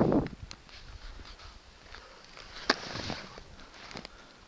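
Skis sliding through deep snow, heard through a camera worn by the skier: a loud rush of snow that dies away in the first moment, then quieter scraping with a sharp click a little under three seconds in.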